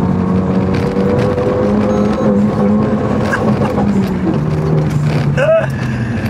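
Renault Mégane 3 RS Trophy's 2.0-litre turbocharged four-cylinder heard from inside the cabin, pulling hard on a back road. Its pitch rises slightly, then drops in steps as the revs fall near the end.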